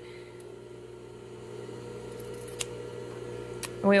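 Steady hum of an industrial sewing machine's motor running idle, with two sharp clicks, one about two and a half seconds in and one near the end.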